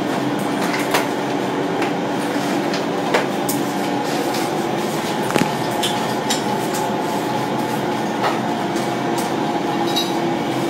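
Machinery of a biomass gasification plant running with a steady mechanical drone, broken by a few short knocks and clanks.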